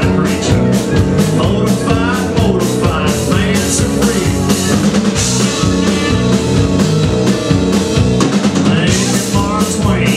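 Live rockabilly band playing: drum kit, bass and guitar, with a wavering lead line over them.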